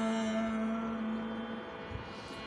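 A man's voice holding the long final note of a Carnatic varisai exercise at a steady pitch, fading out about a second and a half in and leaving a faint electrical hum.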